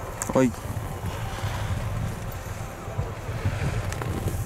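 Wind buffeting the camera microphone: a gusty low rumble throughout, with a brief spoken word near the start.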